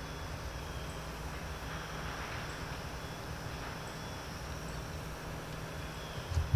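Outdoor background: a steady low rumble under a faint hiss, with a few faint high chirps.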